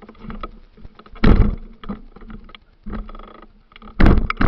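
Rustling and scraping of a worn camera rubbing against clothing and trailside plants as its wearer pushes through brush, in irregular loud bursts, the loudest about a second in and another near three seconds.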